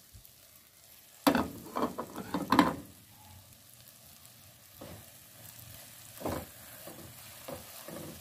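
A silicone spatula stirring and scraping thick urad dal as it fries in a nonstick pot, over a faint sizzle of oil. A run of louder strokes comes about a second in, then only a few quieter ones.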